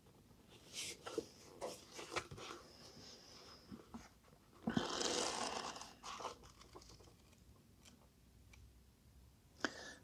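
Pages of an old paperback being handled: faint paper rustles and small clicks, with a brief run of riffled pages about five seconds in.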